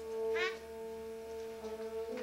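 Concert band holding a soft sustained chord. About half a second in, a short rising squeal cuts across it.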